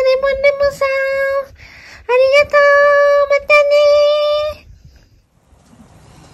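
A woman's high voice singing a drawn-out thank-you in long held notes, the last held for about two and a half seconds and stopping about four and a half seconds in.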